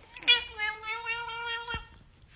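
Domestic cat giving one long, drawn-out meow that holds a nearly steady pitch, with a brief knock just before it ends.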